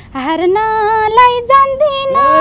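A woman singing a line of a Nepali dohori folk song in a high voice, without accompaniment. It starts with an upward glide and settles into a long held note.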